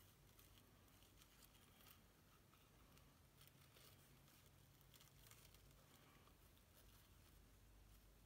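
Near silence, with faint scattered rustles of seam binding ribbon being handled and tied into a bow on a card box.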